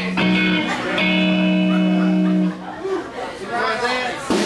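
Electric guitar sounding two long sustained notes, the second held for about a second and a half, then voices briefly near the end.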